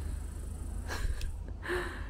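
A steady low rumble with a couple of faint clicks about a second in, then a short intake of breath near the end, just before speech.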